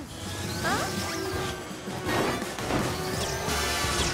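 Cartoon sound effects over background music: noisy swooshes and swells with gliding tones, one rising near the end.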